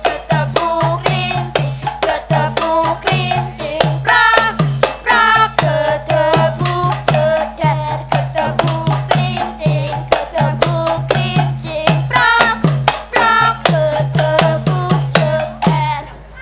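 Javanese gamelan accompaniment for a children's dolanan song: quick, steady hand-drum (kendang) strokes under a voice singing the melody.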